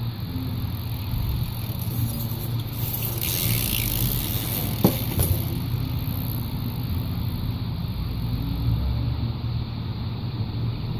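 Street traffic going by with a steady low hum. A hissing rush swells for about a second around three seconds in, and a single sharp knock comes near the five-second mark.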